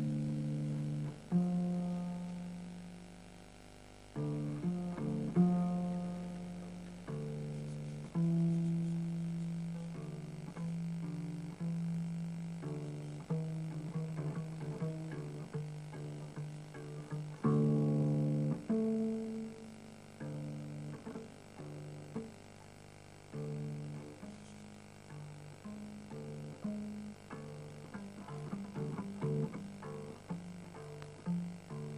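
Double bass played pizzicato and unaccompanied: plucked notes left to ring and fade, some held a second or two, then quicker runs, with a few strongly plucked notes standing out.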